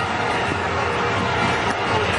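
Steady crowd noise from the stadium spectators.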